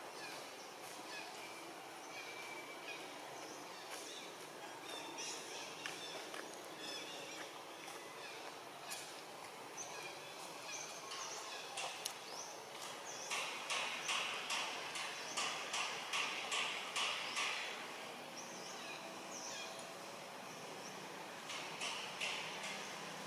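Outdoor ambience with scattered high bird chirps and faint clicks. About halfway through comes a run of sharp rhythmic clicking pulses, about three a second, lasting some four seconds.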